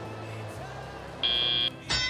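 Robotics competition field sound cues over steady background music: a short, loud, high electronic beep about a second in, then a fuller sustained tone starting near the end, marking the end of the autonomous period and the start of the driver-controlled period.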